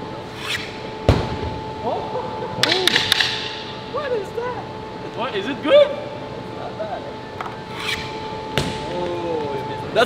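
A hockey stick cracking a ball in an indoor rink, a sharp hit near the end that echoes through the arena, after an earlier sharp knock about a second in. Low voices and laughter come and go over a steady hum.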